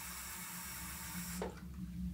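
Bathroom sink tap running with a steady hiss, then shut off abruptly about a second and a half in with a light knock.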